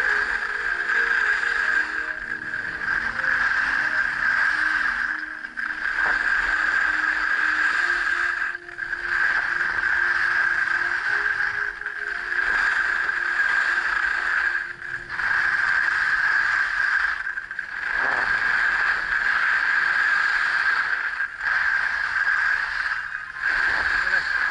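Skis sliding and scraping over firm groomed snow in a loud, steady hiss that dips briefly every two to four seconds as the skier links turns.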